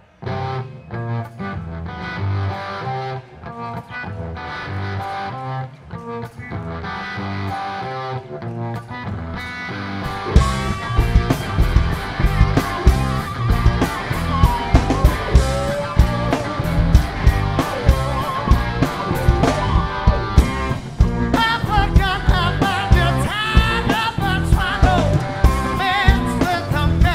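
Rock band playing live, starting a song: guitar plays an intro alone for about ten seconds, then the drum kit comes in and the full band plays on at a louder level.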